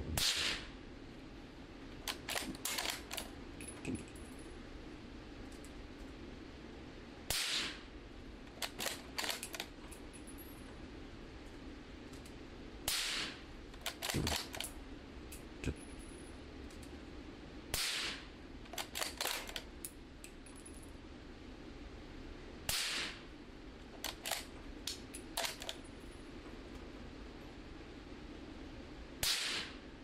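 Six suppressed shots from a 300 Blackout bolt-action rifle with a 16-inch barrel and a full-size suppressor, about every five seconds, each followed by a run of clicks as the bolt is cycled. The shots are crazy quiet, and the bolt's clicks are nearly as prominent as the shots.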